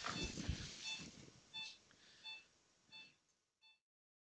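Angiography X-ray system beeping during a contrast run: six short electronic beeps, about one every 0.7 seconds, growing fainter. Faint low handling noise lies under the first second.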